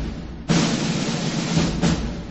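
Opening of an orchestral logo fanfare: drums rolling under a sustained low note, with a heavy drum hit about half a second in and a smaller accent near the end.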